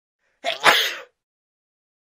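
A person sneezing once, about half a second in: a brief breathy "ah" intake, then the sharp "choo" burst, lasting under a second.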